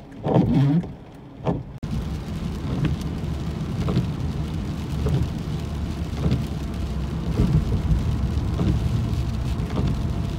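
Car driving on a wet road in rain, heard from inside the cabin: a steady low rumble with tyre hiss that starts suddenly about two seconds in. Before that, a short stretch of rain falling on a wet street with a few brief louder sounds.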